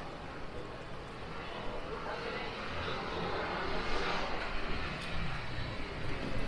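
City street traffic noise, with a car driving past: its engine and tyre noise build from about two seconds in and are loudest about two-thirds of the way through.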